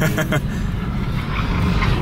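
Car engine and road noise heard from inside a moving car's cabin, a steady low rumble, with a short laugh at the very start.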